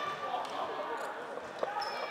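Indistinct chatter of voices in a large sports hall during floorball play, with a single sharp knock from the play on court about one and a half seconds in.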